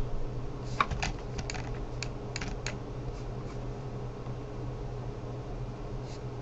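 A quick, irregular run of about ten computer keyboard clicks in the first three seconds, then only a steady low electrical hum.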